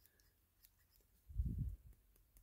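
Small scissors snipping synthetic fur: faint light clicks, with a brief low muffled bump from handling about one and a half seconds in.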